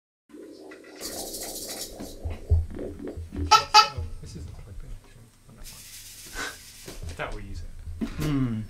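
Voices and scattered instrument sounds from a band in a small room before a song starts, with two short stretches of high hiss, one about a second in and one near six seconds.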